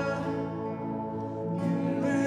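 Live worship band music led by acoustic guitar, with held notes and a softer passage in the middle.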